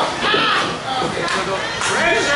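Live wrestling crowd shouting and yelling, several spectators' voices overlapping, with a short sharp crack near the end.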